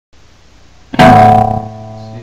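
Clean-toned electric guitar: a single chord struck about a second in, its notes ringing on and slowly fading.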